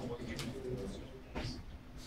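Low, indistinct murmured talk, with two brief sharp noises about half a second in and again a second later.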